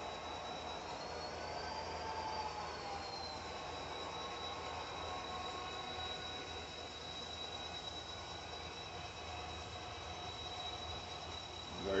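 Model freight train rolling along the layout's track: a steady rumble of wheels on rail with a thin, steady high whine over it.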